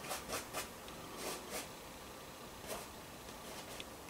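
Paintbrush dragging across stretched canvas in several short, faint scratchy strokes, most of them in the first second and a half.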